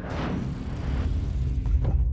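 Closing logo sting: a whooshing swell over a deep rumble, ending in a sharp hit shortly before the end that gives way to a held music chord.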